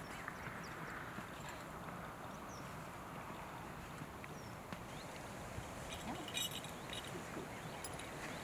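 Faint outdoor ambience at the water's edge: a steady low hiss with a few faint high chirps, and a short run of sharp clicks about six seconds in.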